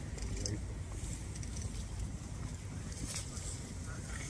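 Steady low rumble of wind on the microphone, with faint, indistinct voices in the background.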